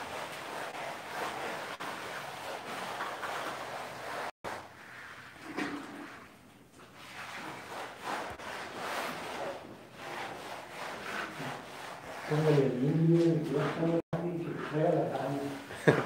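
Faint, indistinct voices over room and handling noise, then a voice talking clearly for the last few seconds.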